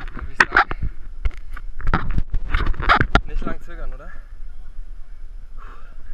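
A quick run of sharp knocks and rustles for the first three seconds, then a brief bit of voice and quieter wind-like noise: the body-worn camera jostled as the wearer shifts on the crane's steel edge.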